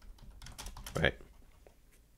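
Typing on a computer keyboard: a quick run of keystrokes in the first second or so, then a few scattered fainter ones.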